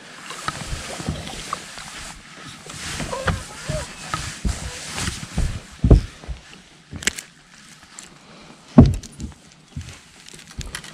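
A hooked bass splashing at the surface as it is brought to the boat, then a few heavy bumps as it is lifted aboard and handled, the loudest near the end.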